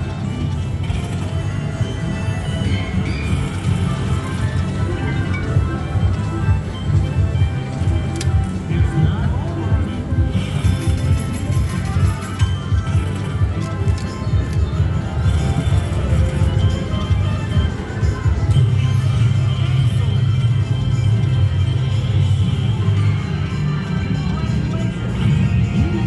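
China Mystery slot machine's jackpot feature music playing steadily, with a strong low bass.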